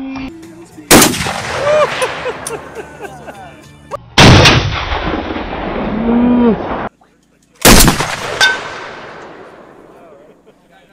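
Three shots from a Barrett M82A1 semi-automatic .50 BMG rifle, about three and a half seconds apart. Each is a sharp blast followed by a long echo that fades over several seconds. The second shot's echo cuts off abruptly.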